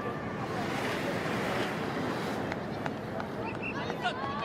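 Steady outdoor background noise with wind and indistinct voices, and a few sharp clicks about two and a half seconds in.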